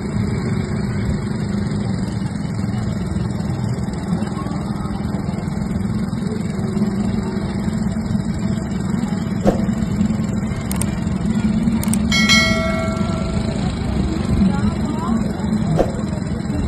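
Small quad bike (mini ATV) engines running steadily at low speed on a dirt track. Late on there is a brief ringing tone.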